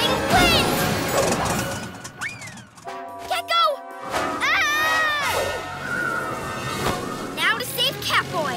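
Cartoon action soundtrack: background music with short gliding vocal cries and sound effects, briefly dropping to held notes about three seconds in.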